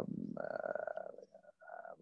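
A man's drawn-out hesitation sound in a creaky, rattling voice, held for about a second and then trailing off into a few short fragments.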